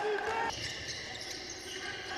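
Basketball arena ambience: a low, steady crowd hubbub in a large indoor hall, with the drawn-out end of a commentator's word in the first half second.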